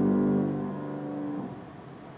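The last held chord of a tuba with piano accompaniment, ending the piece: the chord stops less than a second in, one note lingers until about a second and a half in, then only faint room tone remains.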